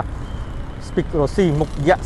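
A man talking, starting about a second in, over a faint low background rumble and a thin steady high tone.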